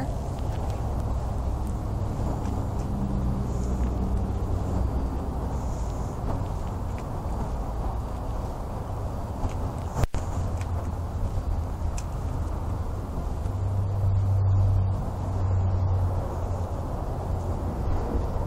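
Steady low outdoor rumble of vehicle traffic, swelling for a couple of seconds late on, with one short click about ten seconds in.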